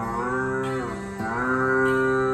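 Rudra veena playing a phrase of Raga Abhogi with long pitch glides (meend) over a steady tanpura drone. A note is bent upward, sags down about a second in, then is bent up again and held.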